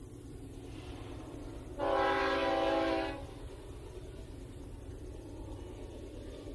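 Distant freight locomotive horn: one blast of about a second and a half, several steady tones sounding together, over a steady low rumble.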